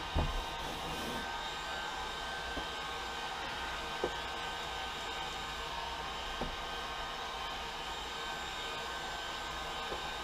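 Handheld electric heat gun running steadily, its fan blowing hot air onto a wall with a faint steady whine on top. A few light knocks sound now and then, the loudest about four seconds in.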